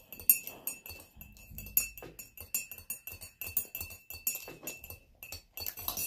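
Metal teaspoon stirring in a ceramic mug, clinking against its sides many times in an uneven run of several clinks a second. A faint steady high tone sits behind it and stops near the end.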